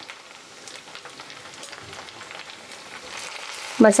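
Sliced onions frying in oil in a nonstick kadhai, a steady sizzle with fine crackles, with ground chilli and turmeric just added on top.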